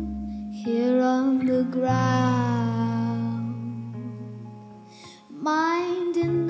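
A young girl singing a slow song in long held notes over a soft guitar and low sustained bass accompaniment. The voice and backing dip briefly around five seconds in before the singing picks up again.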